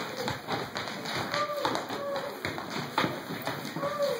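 Several voices calling out in gliding, falling tones over irregular sharp taps that run through the whole stretch.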